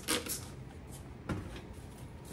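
Trigger spray bottle giving one last short spray of cleaner into a drawer, then a single knock about a second later.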